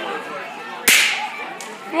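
A hand-held pull-string party popper going off with a single sharp crack about a second in.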